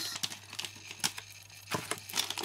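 Scissors snipping open a thin plastic packet, with a few sharp clicks and crinkles of the plastic, and a knock near the end.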